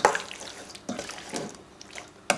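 A spoon stirring chicken pieces through thick yogurt marinade in a stainless steel bowl: a sharp click near the start, then a few soft, wet squelches.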